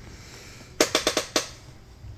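A quick run of five sharp knocks, about a second in, each with a short ring.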